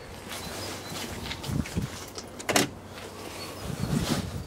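A building's glass entrance door being opened, with footsteps on paving, a sharp click about two and a half seconds in, and a knock as the door swings open near the end.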